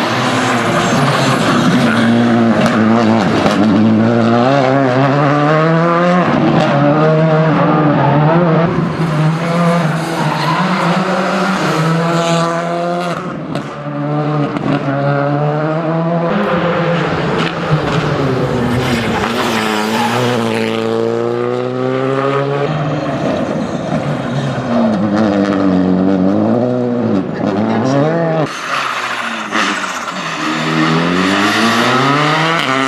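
Škoda Fabia R5 rally car's turbocharged four-cylinder engine driven hard, the revs climbing and dropping again and again through gear changes and corners.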